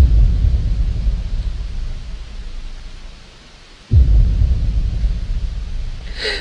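Two rolls of thunder, each starting suddenly with a deep rumble that fades away over a few seconds; the second begins about four seconds in.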